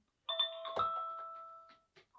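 Wyze Cam V2 chiming from its small built-in speaker after its setup button is pressed: two electronic notes, with a click at the second, ringing out and fading over about a second and a half. The chime signals that the camera has entered setup (pairing) mode.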